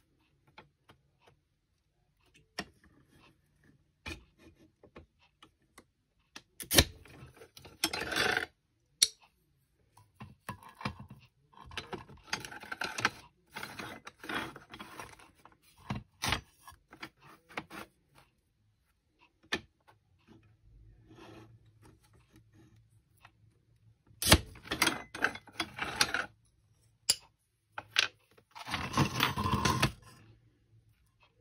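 Paper strips being cut on a sliding paper trimmer and handled on a cutting mat: several short scraping runs of one to two seconds each, with scattered clicks and paper rustling between them.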